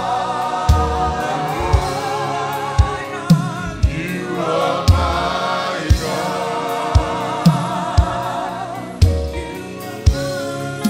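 A gospel worship team sings together in long held notes with vibrato, a slow worship chorus, over low thumps about once a second.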